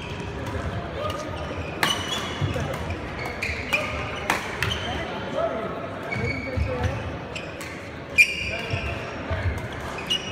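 Badminton rally: rackets strike the shuttlecock with sharp cracks every one to two seconds, the loudest about eight seconds in, while court shoes squeak on the floor and voices carry in the hall.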